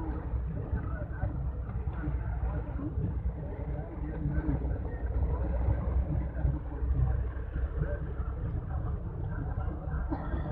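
A vehicle on the move: a steady low rumble of engine and road noise, with indistinct voices above it.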